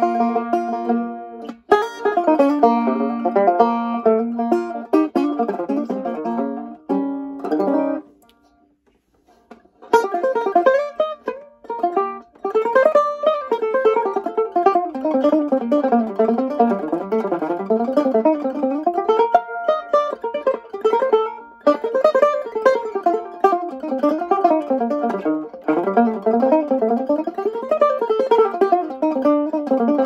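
Ganjo, a six-string guitar-banjo, being flatpicked: a picked passage that stops about eight seconds in, then after a short gap a continuous run of rolling picked arpeggios that sweep up and down in pitch.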